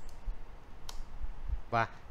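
A sharp computer keyboard keystroke about a second in: the Enter key, running a typed command. A fainter click comes at the very start, and a man starts speaking near the end.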